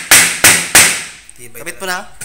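Claw hammer driving nails into a wooden frame overhead: three sharp blows in quick succession within the first second.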